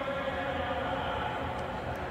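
Steady stadium background sound at a moderate level, an even noise with faint sustained tones running through it.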